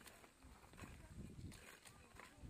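Near silence: faint outdoor field ambience with soft, low, uneven rumbles.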